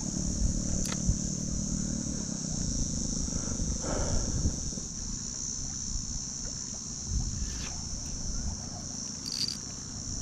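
Wind buffeting the microphone with a low rumble, under a steady high-pitched insect drone, with a few faint clicks.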